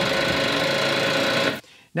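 Riding lawn mower's electric starter engaged by the ignition key, a steady mechanical buzz for about a second and a half that cuts off suddenly without the engine catching: the battery is too weak to start the mower.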